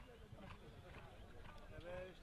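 Faint hoofbeats of a ridden horse cantering on grass, under a murmur of background voices.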